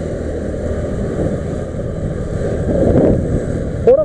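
Honda scooter running steadily while being ridden, its engine and road noise mixed with wind buffeting the camera microphone; the sound grows a little louder about three seconds in.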